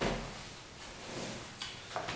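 A person settling at a wooden table: a sharp knock at the start as he sits and puts his arms down, then soft rustling and two light clicks near the end.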